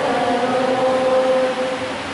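Choir singing the responsorial psalm, holding one long sustained note that thins out near the end.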